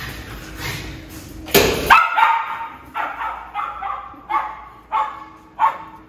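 Small dog barking over and over in short, high-pitched yaps, roughly one or two a second, from about two seconds in, after a loud burst of noise. It is the frantic barking of a dog worked up about going out for a walk.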